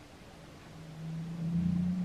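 A low steady hum from a film soundtrack played through a TV's speakers, swelling from about a second in and dropping away sharply at the end.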